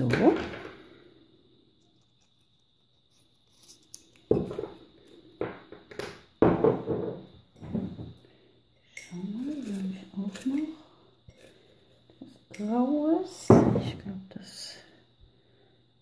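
Indistinct voice sounds that rise and fall in pitch, with no clear words, heard twice in the second half. Several short noises come between them.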